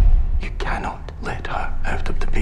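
A voice whispering a line over a steady low rumbling drone.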